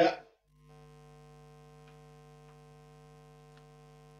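Faint steady electrical hum with several overtones from a guitar rig, which the player puts down to a noisy guitar cable. It cuts out for a moment about half a second in, then comes back, with a few faint ticks.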